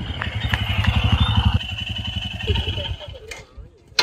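Royal Enfield Himalayan motorcycle engine running close by, loud for the first second and a half, then easing off and dying away by about three seconds in.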